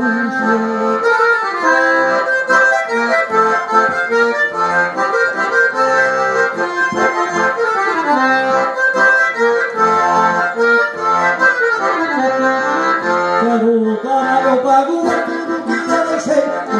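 Diatonic button accordion (gaita ponto) playing an instrumental passage of a lively gaúcho tune, a quick melody over a pulsing bass line.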